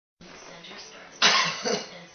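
A person coughs: a sudden loud breathy burst about a second in, then a weaker second burst just after, over a faint steady low hum.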